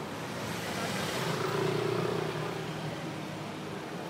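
A car passing along the street, its engine and tyre noise swelling to a peak about two seconds in and then fading, over steady background traffic.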